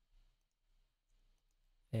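Near silence with one faint click from the computer's input a moment after the start; a man's voice begins right at the end.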